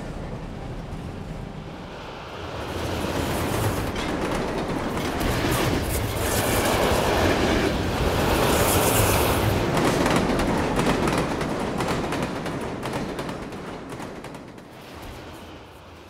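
Moving passenger train heard from on board: wheels clattering on the rails with rushing air. It swells a few seconds in, is loudest in the middle, then fades away toward the end.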